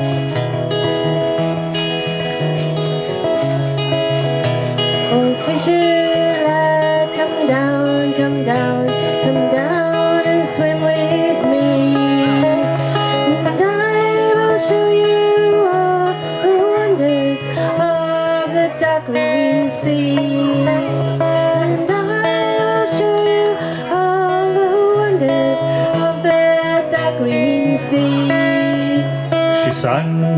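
Steel-string acoustic guitar strummed as a folk song accompaniment, with a woman singing the melody from about six seconds in.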